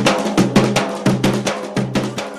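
Garhwali dhol, a two-headed barrel drum, beaten in a fast, even rhythm of about five strokes a second, each stroke ringing on a low tone: the drumming of a jagar that calls the deity.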